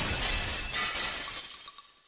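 Glass-shattering sound effect: the crash of breaking glass dies away, leaving high, scattered tinkling of falling shards near the end.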